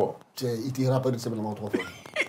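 A man's voice holding a low, drawn-out vocal sound for about a second and a half, at a fairly even pitch rather than in separate words.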